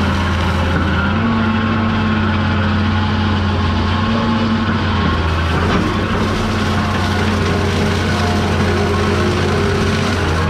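Diesel engine of a John Deere excavator running steadily under hydraulic load while its boom-mounted toothed mulching head grinds brush and small trees, the engine note shifting slightly up and down a few times as the load changes.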